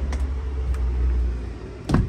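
A low, steady rumble with a couple of faint clicks, then a single loud thump near the end as a uPVC front door is pushed open and the handheld camera enters the hallway.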